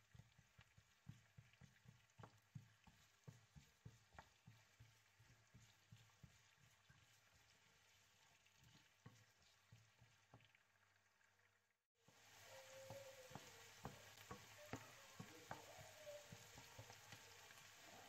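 Very faint sizzling of diced onion frying in oil in a non-stick pan, with light scattered taps and scrapes of a wooden spoon stirring. After a brief break about twelve seconds in, the sizzle becomes a steadier faint hiss.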